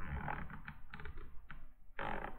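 Light, irregular clicking from computer input at a desk, a handful of small clicks over two seconds.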